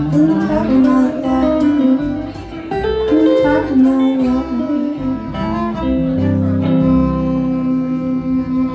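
A live acoustic-electric trio plays an instrumental passage together: upright bass, hollow-body electric guitar and violin. Notes change through the first half, then settle into long held chords.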